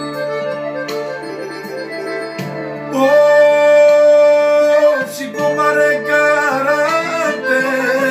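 Piano accordion music with a man singing over it; a long held sung note about three seconds in is the loudest part, followed by a wavering, ornamented vocal line.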